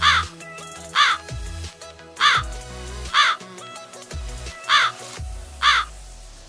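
A bird cawing six times, about a second apart, each caw short and loud, over background music with low bass notes.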